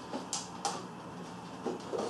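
A few light clicks and taps of a hard plastic RC truck body shell being handled: two sharp clicks about a third of a second apart, then fainter ticks near the end.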